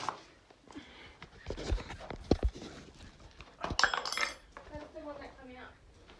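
Dull thumps about two seconds in, then a short, sharp high-pitched burst about four seconds in, as a rabbit bolts into a purse net set over its burrow. Low voices follow near the end.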